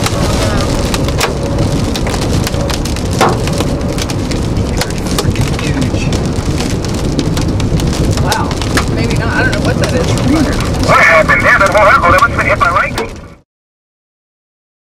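Rain and hail hitting the car, heard from inside the cabin, as steady heavy noise dense with sharp clicks of hailstones striking. Near the end a wavering higher sound rises over it, and then everything fades out abruptly.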